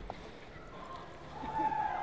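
Arena background noise with the muffled hoofbeats of a horse galloping a tight circle on soft dirt. A faint steady hum comes in about a second and a half in.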